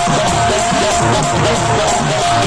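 Loud live Tamil village folk music (gramiya padal) played on an electronic keyboard with a barrel drum, one steady high keyboard note held over a moving melody.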